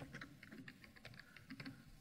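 Computer keyboard typing: a quick run of faint key clicks as a short name is typed in.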